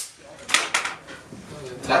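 A plastic milk crate clattering as it is caught by hand, just after being thrown by a pneumatic catapult, with a short rattle about half a second later.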